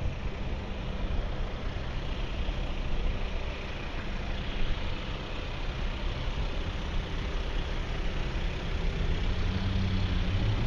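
Car engines idling in a queue of slow traffic: a steady low engine hum over an even wash of street noise.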